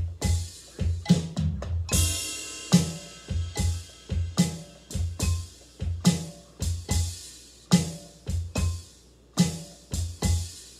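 A drum kit played in a slow, steady groove, with bass drum and snare strokes. A cymbal crash rings out about two seconds in.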